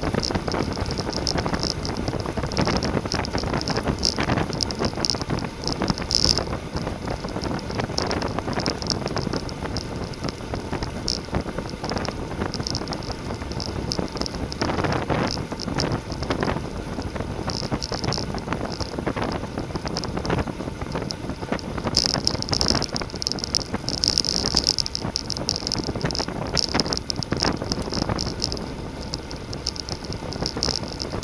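Wind rushing over the microphone of a camera on a road bicycle ridden fast, with tyre noise on asphalt underneath; the wind rises and falls in gusts.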